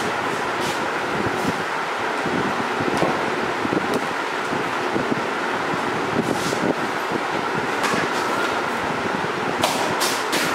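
Steady background noise with occasional short clicks, the most marked just before the end.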